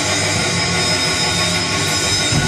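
Live heavy metal band's distorted electric guitars holding a sustained chord through the amplifiers, a loud steady drone with ringing high tones and no drum hits.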